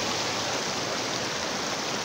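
River water rushing over shallow rapids, a steady even rush.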